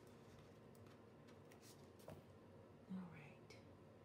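Near silence: a few faint light ticks as small foil stickers are handled and pressed onto a paper planner page, with a brief faint murmur about three seconds in.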